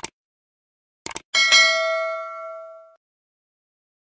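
Subscribe-button sound effects: a short mouse-style click, then a quick double click about a second in, followed at once by a bell-like notification ding that rings out and fades over about a second and a half.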